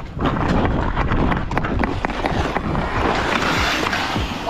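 Ice skates scraping and gliding on an outdoor rink as a player carries the puck in, with sharp knocks of the hockey stick on the puck and wind noise on the microphone.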